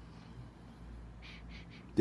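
A man sniffing his wrist to smell the cologne left on his skin: three short, quick sniffs about a second in, over a faint low hum.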